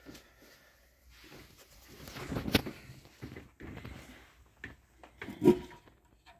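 Handling noises: rustling, clicks and knocks as a sewing machine's power cord and plastic foot pedal are moved and picked up, the loudest a sharp knock about two and a half seconds in.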